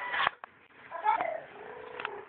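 A cat meowing: a short call about a second in that bends in pitch, then a longer, steadier call near the end. A sharp click comes just before them, near the start.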